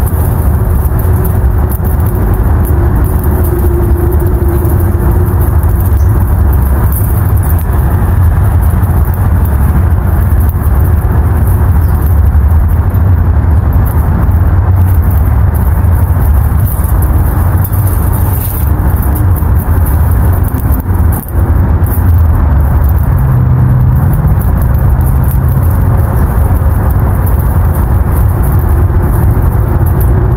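Wind buffeting an outdoor microphone: a loud, steady low rumble.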